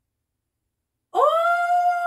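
A woman's long, high-pitched vocal cry of excitement, like a drawn-out "ooooh". It starts about a second in with a quick upward glide and is then held on one steady note.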